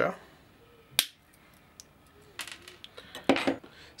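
Hand cutters snapping through a flat washer: one sharp crack about a second in. Near the end come a few lighter clicks and a louder knock of metal.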